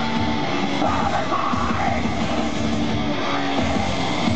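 A live heavy band playing loud, with distorted electric guitars and drums and a shouted vocal over them.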